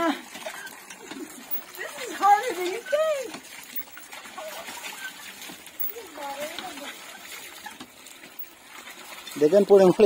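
Water from a hand-pumped tube well pouring from the spout into a metal pail as the pump handle is worked, a steady splashing under the voices of people around it. Laughter comes near the end.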